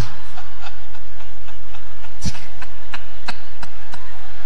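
Steady low hum from the microphone and amplifier system, with a few faint clicks and one dull thump a little over two seconds in.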